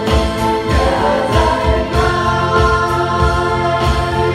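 Live worship band music with singing: a steady drum beat played on a Roland electronic drum kit, under violin and acoustic guitar.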